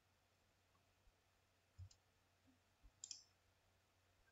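Near silence, with a faint computer-mouse click about three seconds in and a couple of soft low thumps before it.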